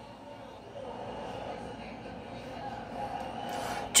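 Quiet room tone: a faint, steady background hum with no distinct events, and a brief faint noise shortly before the end.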